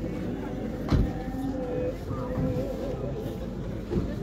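Voices of people gathered close by, with a wavering sung or drawn-out vocal line, and a single dull thump about a second in.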